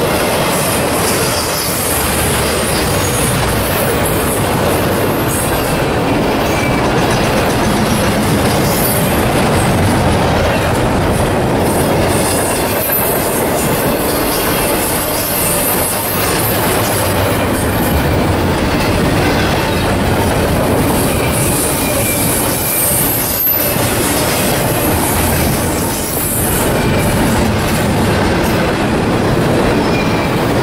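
Double-stack intermodal freight cars rolling past at close range: a steady, loud rumble and rattle of steel wheels on the rails, with high-pitched wheel squeal coming and going.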